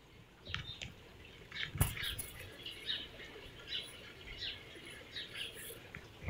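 Small birds chirping in short, high, scattered notes, with one sharp knock about two seconds in.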